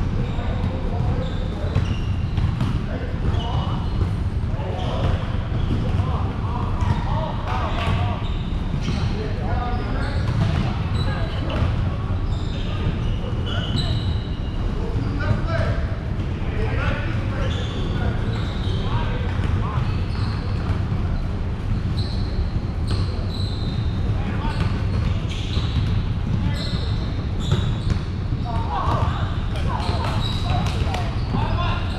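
Indoor volleyball play in a large echoing hall: frequent sharp ball hits and bounces, short high squeaks, and indistinct players' voices over a steady low rumble.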